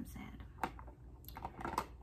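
A quick run of light clicks and knocks of plastic makeup containers being handled and set down, about eight in two seconds.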